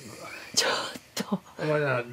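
Speech only: a woman and an elderly man talking to each other in Japanese.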